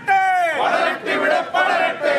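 A group of men shouting protest slogans together. It opens with one long shout that falls in pitch, and more shouted lines follow.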